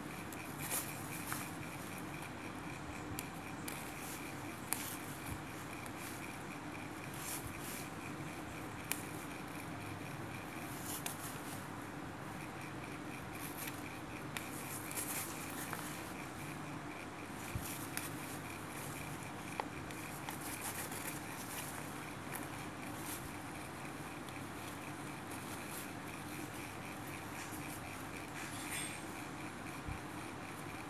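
Hand-sewing a zipper into a fabric bag lining: irregular soft rustles and scrapes of fabric and thread being drawn through by a needle, over a steady background hum.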